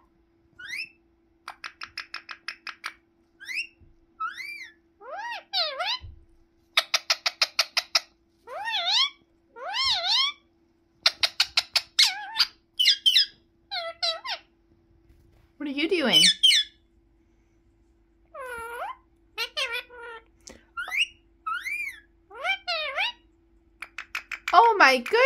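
Indian ringneck parakeet chattering: a string of chirps and short whistles, with several quick runs of rapid repeated notes. About 16 seconds in comes one long call that falls steeply in pitch.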